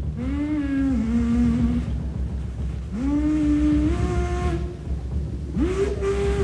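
Live jazz quintet of alto sax, tuba, guitar, cello and drums: a lead instrument plays three long held phrases, each sliding up into pitch and then stepping between held notes, over a low steady bass.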